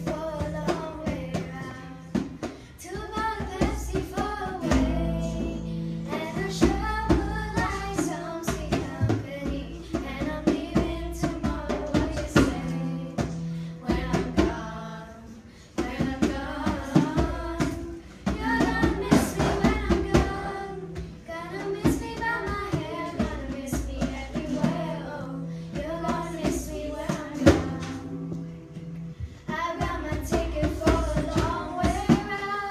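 A girl singing a song accompanied by a djembe played with bare hands, sharp slaps and deep bass strokes keeping a steady beat under the melody.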